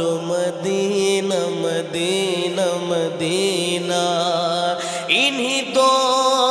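A man singing a naat, an Urdu devotional song, into a microphone, drawing out long, wavering ornamented notes over a steady low drone.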